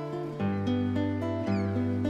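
Solo classical guitar playing a passacaglia: plucked melody notes over a held bass note that changes about half a second in.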